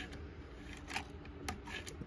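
A few faint, sharp clicks from the mechanism of a 1926 Remington Portable typewriter as its typebar action is worked and the keys drop down.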